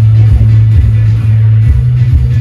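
Loud electronic dance music from a DJ sound system, dominated by a heavy, steady bass note that steps up in pitch near the end.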